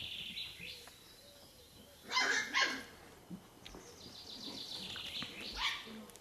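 A puppy yapping: two short high-pitched barks about two seconds in and another near the end, with a thin high whine in between.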